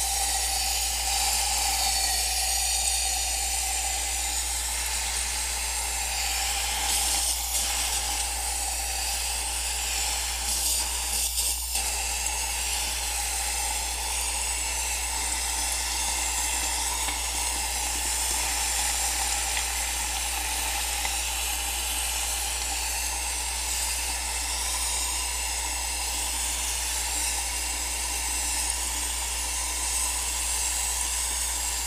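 Can of air duster spraying its liquid propellant through the straw into a glass of water: a steady hiss and fizz as the propellant boils off in the water, broken briefly about seven and again about eleven seconds in.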